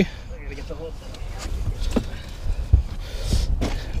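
Soft knocks and rustling from a large musky being handled on a plastic measuring board on a boat deck, over a low rumble. A quiet voice murmurs briefly near the start.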